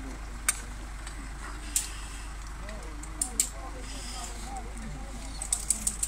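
Scattered sharp metal clicks and clinks of rescue gear being handled and clipped, carabiners and harness, a few single clicks and then a quick run of them near the end, under low background voices.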